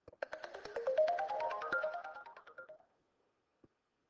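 SMART Notebook Number Cruncher widget's correct-answer sound effect: a quick rising run of chime-like notes over rapid sparkly ticking, lasting about two and a half seconds, signalling that the handwritten answer has been recognised as correct. A single faint click follows near the end.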